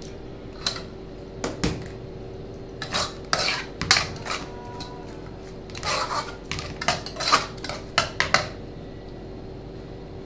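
Metal spoon stirring minced chicken larb in a metal saucepan: irregular clinks and scrapes of metal on metal, in a bunch about three seconds in and a longer run from about six to eight and a half seconds, over a steady low hum.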